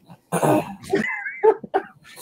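A man coughing and clearing his throat, a short loud burst about a quarter second in, followed about a second in by a brief high wavering sound and a few short vocal noises.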